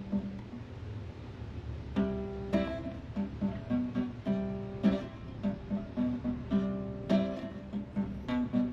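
Acoustic guitar strumming chords in a steady rhythm, with no singing. For the first two seconds there is little but a soft low rumble, then the chords come in about two seconds in.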